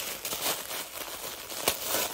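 Package wrapping crinkling and rustling as hands open it, with one sharp crackle near the end.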